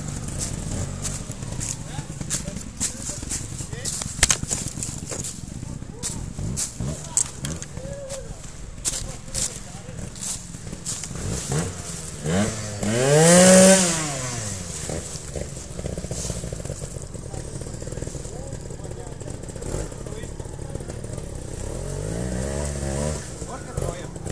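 Trials motorcycle engines running on a wooded slope, with sharp crackles and knocks in the first few seconds. About halfway through one bike is revved loudly, its pitch rising and then falling back within about two seconds, and a shorter rev follows near the end.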